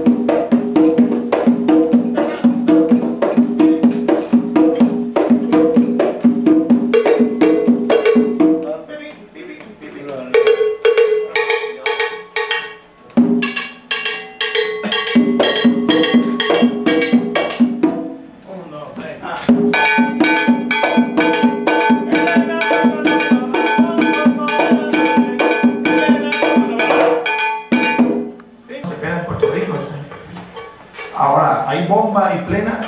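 A Puerto Rican plena recording: panderos (hand frame drums) playing a fast, dense beat with a sustained melodic part over it. The music dips briefly a few times, about nine, thirteen and eighteen seconds in.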